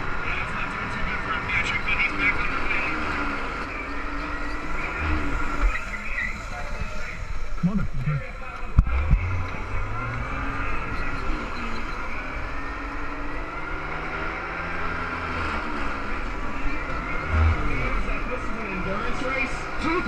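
Electric drive of a modified Power Wheels racing kart running along an asphalt track, with a public-address voice in the background. A single sharp knock comes about nine seconds in.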